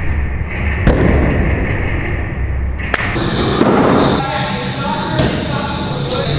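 Throwing axes striking wooden targets: two sharp thuds, about a second in and about three seconds in. They are heard over background music with a steady low bass.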